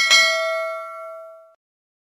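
A mouse-click sound effect followed at once by a single bright bell ding, the notification-bell chime of a subscribe animation, ringing out and fading away over about a second and a half.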